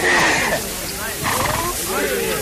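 Men's voices shouting and grunting with effort as heavy grain sacks are heaved up onto a cart: a rough burst right at the start, then another strained call a little over a second in.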